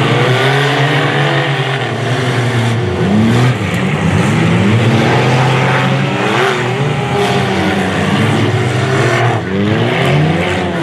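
Several front-wheel-drive stock cars racing on a dirt track, their engines revving up and down over one another, loud throughout.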